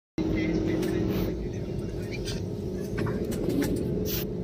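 Steady jet airliner cabin noise: the engines and airflow make an even rumble with a faint hum. It starts after a split-second dropout.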